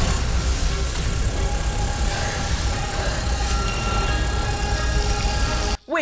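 Soundtrack of a TV drama scene: background music over a loud, deep rumble, cut off abruptly near the end.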